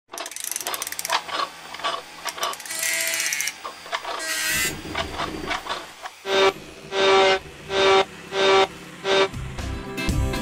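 Mechanical sound effects for an animated slide carriage: rapid ratcheting clicks and short whirs, one rising in pitch, then five evenly spaced clunking strokes, each with a brief ringing tone, about one every 0.6 s.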